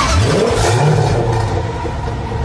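Car engine revving: the pitch climbs quickly, holds high for about a second, then eases off a little.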